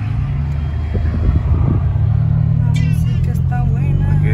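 Car engine running with road noise, heard from inside a moving car's cabin: a steady low rumble that grows slightly louder as the car drives.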